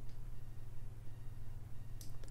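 A steady low electrical hum under near-quiet room tone, with a faint click just after the start.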